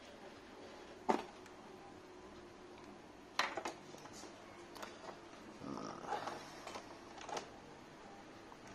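Faint clicks and rustling of hands handling motorcycle wiring and multimeter test leads at the battery terminal while connecting the meter in series, with a sharp click about three and a half seconds in.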